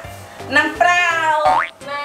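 An edited-in cartoon comedy sound effect over background music: a held pitched tone that swoops sharply upward in pitch about a second and a half in.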